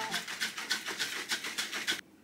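Stainless steel shaker bottle being shaken hard, its contents rattling and sloshing in a quick, even rhythm of about six or seven shakes a second. The sound cuts off suddenly at the end.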